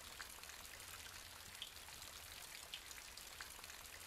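Faint tail of an electronic music track with no melody left: a quiet, even hiss with scattered soft ticks over a low hum.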